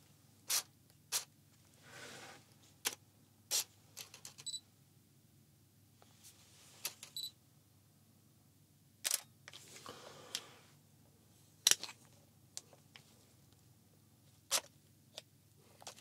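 Canon EOS 40D digital SLR's shutter and mirror firing about a dozen times at uneven intervals, each release a sharp click, some in quick pairs.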